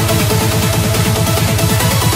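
Electronic dance music from a trance DJ mix: a fast rolling bassline of short notes, about eight a second, each falling in pitch, under steady held synth tones.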